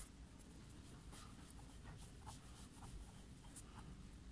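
Faint scratching of a pen on paper as a line of handwriting is written, in short irregular strokes.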